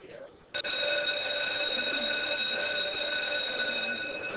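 Electric school bell ringing steadily for nearly four seconds. It starts suddenly about half a second in and fades just after the end.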